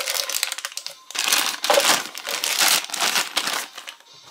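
Thin clear plastic bag crinkling as it is handled with a toy figure inside, in bursts with a short lull about a second in.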